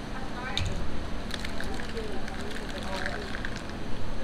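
Thin plastic water bottle crackling and clicking as its cap is twisted off and the bottle is crushed while the water is gulped down in one go. Faint voices sit in the background.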